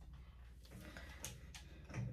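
Faint handling sounds of hair styling with a corded hair tool: a few soft, scattered clicks and rustles over a low, steady room hum.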